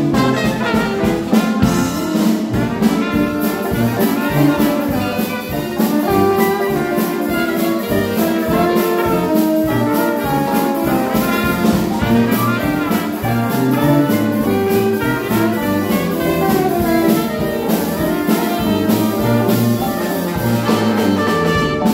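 A live Dixieland jazz band playing: trumpet, trombone and saxophones weave several melodic lines at once over a steady drum-kit beat.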